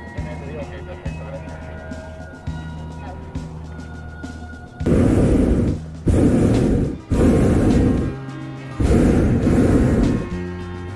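Background music, then a hot air balloon's propane burner firing in four short blasts, each about a second long, starting about halfway through.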